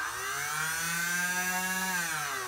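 Nerf Rival Charger MXX-1200's battery-powered flywheel motors revving: a whine that rises in pitch over about the first second as the flywheels spin up, then holds steady at full speed.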